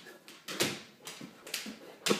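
An excited Old English Sheepdog making short, sharp sounds, about one every half second, as it strains for a treat held out to it.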